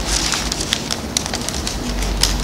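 Thin paper pages of a Bible being turned and rustled close to the microphone: a run of quick, irregular crackles and clicks over a steady hiss.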